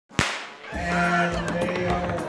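A single sharp bang with a ringing tail, the starting gun for a crab race, followed by a steady held musical note that changes pitch partway through, with a few dull thumps underneath.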